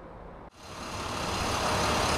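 A large vehicle's engine idling with outdoor street noise. It comes in abruptly about half a second in, swells over the next second and then holds steady.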